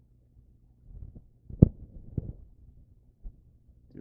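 A few low thumps and clicks close to the microphone. The loudest is a sharp click about one and a half seconds in, with a softer one half a second later.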